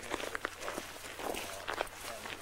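Footsteps of a group of people walking on a road: a run of uneven scuffing steps.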